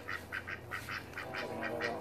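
A white domestic duck giving a rapid run of short quacks, about six a second.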